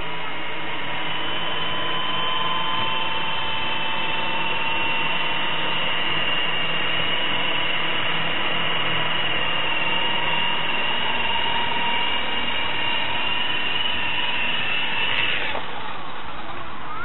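High-pitched whine of small electric RC helicopter motors and rotors in flight, steady over a noisy hiss. The whine cuts off about 15 seconds in.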